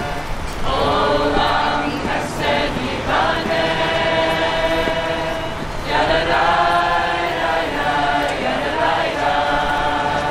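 A group of people singing together unaccompanied, in long held notes, with fresh phrases starting about half a second in, at about three seconds and again at about six seconds.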